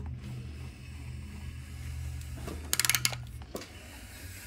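Hand ratchet on the crankshaft bolt of a 5.3 LS V8, its pawl clicking in one short quick run about three seconds in as the crank is turned to line up the cam and crank gear timing marks. A steady low hum runs underneath.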